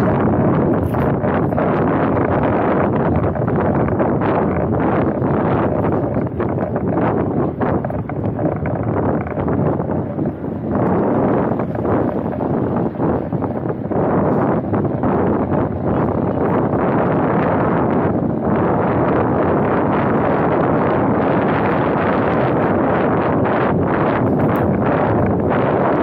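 Wind rushing over the microphone of a camera mounted on the bonnet of a moving car, a steady loud noise that turns gustier for a few seconds in the middle.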